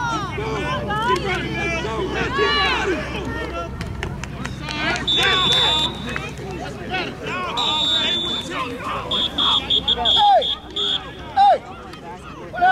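A referee's pea whistle blown to stop the play after a tackle: a short blast about five seconds in, another near eight seconds, then a longer trilling blast. Players and sideline adults are shouting throughout.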